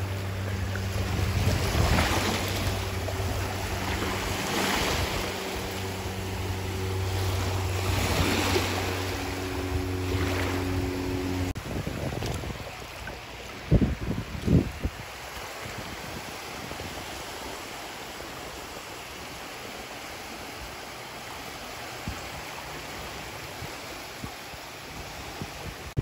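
Small waves lapping and washing over the sand in the shallows, swelling every few seconds, with wind on the microphone. A steady low hum runs under it and stops about halfway, and two sharp knocks come shortly after.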